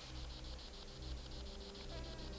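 An insect trilling faintly and steadily: a fast, high-pitched pulse of about twelve beats a second, over a faint low hum.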